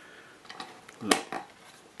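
A few small plastic clicks and handling knocks as a 3.5 mm stereo jack plug is fitted into the trainer port on the back of a Turnigy 9X transmitter. The sharpest click comes about a second in.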